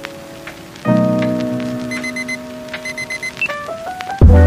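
Background music of held chords, with a new chord coming in about a second in, short quick high notes in groups of four in the middle, and a run of notes stepping upward near the end. Faint scattered clicks sit under it.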